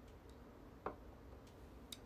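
Near silence in a pause between speech, with two faint short clicks, one about a second in and a smaller one near the end.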